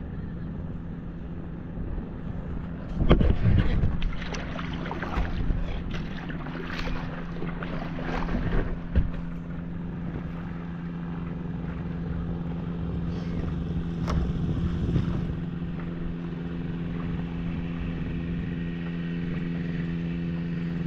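Propeller engine of a homebuilt float seaplane running at a steady taxiing speed on the water, growing a little louder near the end as it approaches. Rumbling buffeting on the microphone comes and goes from about three to nine seconds in.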